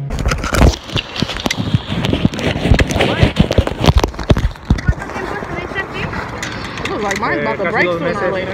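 Handling noise from a phone camera in a waterproof bag: a dense flurry of sharp knocks, rubs and scrapes against clothing and harness for the first five seconds, then lighter rustling.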